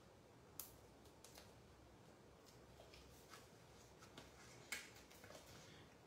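Faint, scattered small clicks and rustles of paper-craft handling: Stampin' Dimensionals foam adhesive squares being peeled off their backing sheet. Two sharper clicks come about half a second in and near the end.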